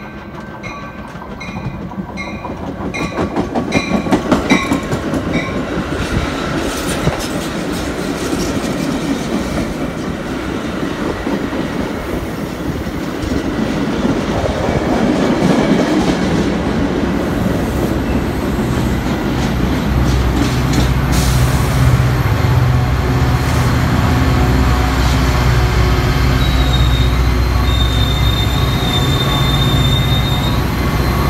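Metra bilevel commuter train pulling into the station behind its EMD F40PH diesel locomotive. A bell dings about twice a second at first, then the cars roll past with wheel clatter and squeal, and the locomotive's diesel engine hums steadily as it draws alongside, with a thin high squeal near the end as the train comes to a stop.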